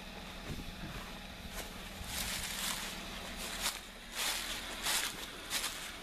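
Footsteps crunching through dry fallen leaves, one step about every half second from about two seconds in.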